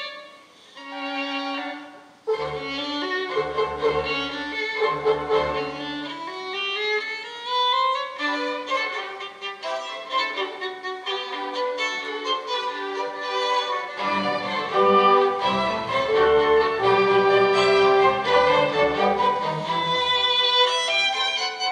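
Solo violin playing a concerto with a symphony orchestra. The violin plays alone briefly at the start, the orchestra comes in with low pulsing chords about two seconds in, a rising run follows, and the full orchestra grows louder in the second half.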